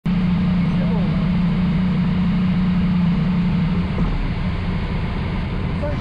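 Yamaha MT-09 SP three-cylinder motorcycle engine idling while stationary, with a steady low hum that drops away about four seconds in.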